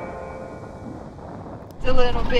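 A faint fading tail of background music, then near the end a sudden low rumble from inside the cab of a Toyota LandCruiser Troop Carrier driving over large corrugations on a rough track.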